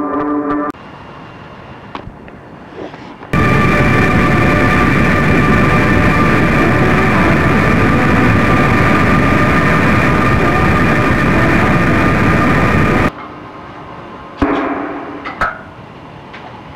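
Guitar music breaks off, and after a quieter stretch with a few clicks, a loud, dense wall of harsh noise with a few steady high tones runs for about ten seconds and cuts off abruptly, like a noise-music passage. A couple of sharp knocks follow near the end.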